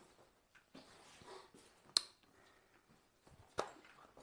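Quiet room with a faint low murmur and two sharp clicks, one about two seconds in and a shorter one near the end.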